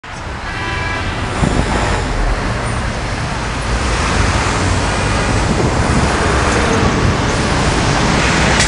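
Busy city street traffic: a steady wash of car engine and tyre noise with a deep rumble, rising quickly at the start.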